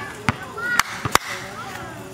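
Basketball bouncing on a concrete court: three sharp bounces in about the first second, with players' voices around them.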